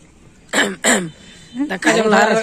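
Two short, loud vocal bursts from a person close to the microphone, each falling in pitch, like coughs or throat-clearing; a man's voice starts talking near the end.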